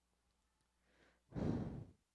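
A person's short sigh, one breath out about one and a half seconds in, after near silence.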